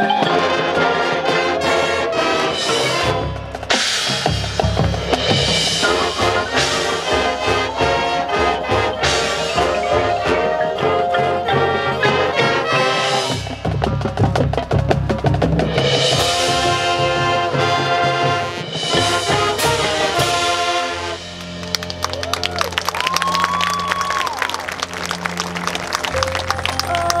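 High school marching band playing: brass over drums and a front ensemble of marimbas and other mallet percussion, in a full, loud passage. About 21 seconds in it drops to a quieter, sparser section.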